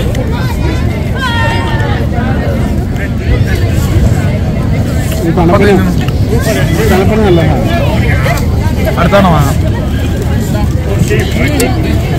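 Several people talking and chattering over a steady, heavy low rumble.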